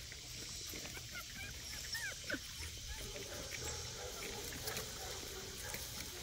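Puppies whimpering faintly, a few short high squeaks about two seconds in.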